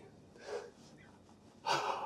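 A man's heavy, excited breathing after shooting a deer: a soft breath about half a second in, then a loud gasping breath near the end.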